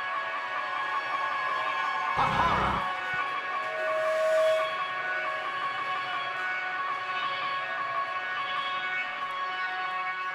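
Amplified live-band drone of several steady held tones, likely from the band's amps or electronics. There is a brief low thud about two seconds in and a short louder held tone around four seconds.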